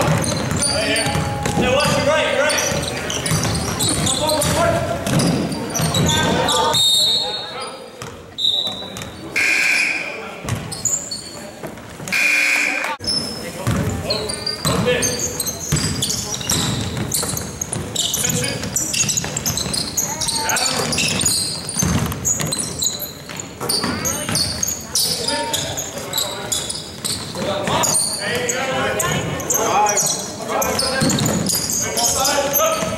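Basketball dribbling on a gym floor during a game, with many short knocks, over indistinct voices of players and spectators. The sound echoes in a large gym.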